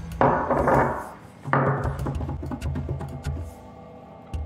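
Hot spicy nuts being crunched and chewed, with two loud noisy bursts early on and a run of small crisp clicks after, over background music with a steady bass.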